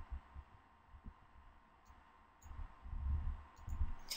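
A few faint computer mouse clicks, then a stretch of low thumps and rumble on the microphone in the second half.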